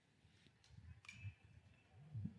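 Near silence, with only a faint low rumble.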